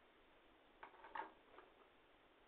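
A handful of short, faint clicks in quick succession about a second in, one of them louder than the rest, over a faint hiss.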